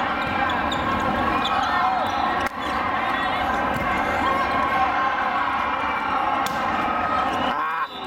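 Indoor volleyball rally: athletic shoes squeak in many short chirps on the court, and a few ball hits sound. A constant crowd of voices fills the large hall.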